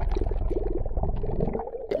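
Brook water bubbling and gurgling, heard underwater: a muffled, deep rumble with a fast churning flutter.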